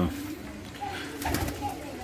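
Domestic pigeons feeding on grain, with soft cooing and a few light pecking ticks in the middle.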